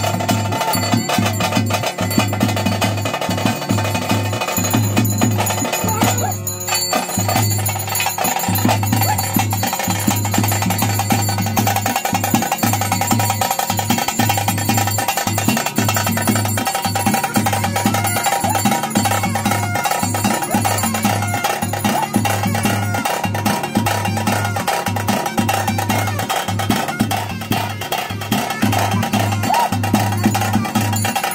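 Loud, continuous Daiva kola ritual music: rapid traditional drumming with a held, wavering melody over it.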